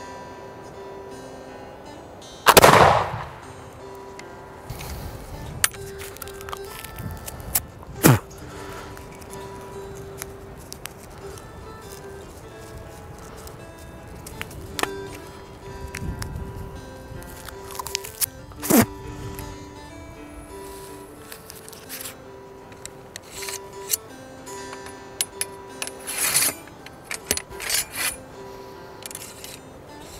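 A .75-calibre Brown Bess smoothbore flintlock musket firing one shot loaded with a paper cartridge, about two and a half seconds in, with a short echo. Afterwards, scattered metallic clicks and knocks of the lock and of reloading, with the ramrod rattling near the end, over steady background music.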